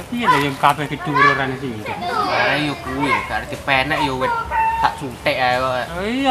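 People talking, in short, lively back-and-forth speech.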